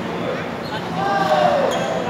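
Indoor badminton play in a large, echoing hall: sharp racket hits on the shuttlecock, and about a second in a short squeal that falls in pitch, the loudest sound in the moment.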